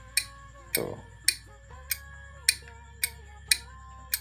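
About seven sharp, irregular clicks from an LED projector headlight's relay wiring as its high beam is switched on and off by tapping a jumper wire to a motorcycle battery. A faint steady hum and quiet background music sit underneath.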